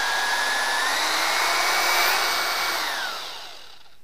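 Corded electric drill spinning a plastic wine whip inside a glass carboy of wine to degas it. The motor whines steadily, steps up in pitch about a second in, then winds down and stops near the end.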